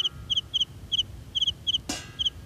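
Cricket chirping steadily: short high-pitched chirps of two or three quick pulses each, about four a second.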